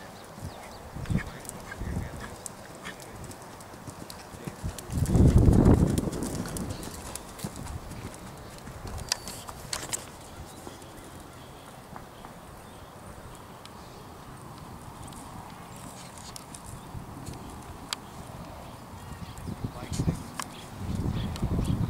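A horse's hoofbeats thudding on sand arena footing at the canter. About five seconds in there is a loud, low rush of sound lasting about a second.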